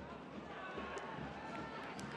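Live football-pitch sound during an attack on goal: voices shouting over steady crowd noise.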